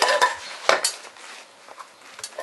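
Metal clatter of fire tongs and a small metal tin being handled, with two sharp clicks close together less than a second in, then quieter handling.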